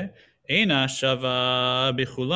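A man's voice chanting a passage in a sing-song recitation. After a brief pause near the start, he holds one long, steady note through most of the second half.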